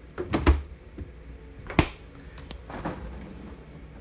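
Residential refrigerator's stainless-steel door and freezer drawer being handled, opened and shut: a few knocks and clunks, the loudest about half a second in and another sharp one just before the two-second mark, with lighter clicks after.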